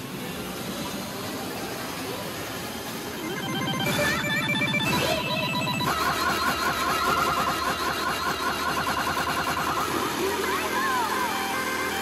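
Pachinko parlour din: electronic jingles, beeps and warbling tones from pachinko machines, getting louder about three seconds in. A rapid bell-like trill runs from about halfway in until shortly before the end.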